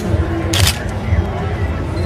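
Background voices in a crowded room, with a sharp camera-shutter click at the start and a longer shutter burst about half a second in.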